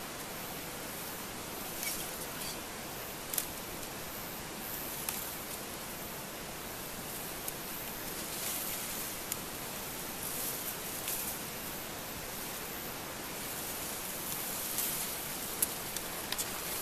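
Steady outdoor hiss with a few faint, brief rustles and clicks from plants being handled as nettles are picked into a bamboo basket.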